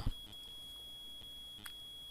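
Quiet pause in a voice recording: a faint, steady high-pitched electronic whine over low hiss and hum, with one soft click near the end.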